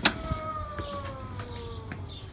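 A door latch clicks, then the door's hinge creaks in one long squeal that slowly falls in pitch as the door swings open.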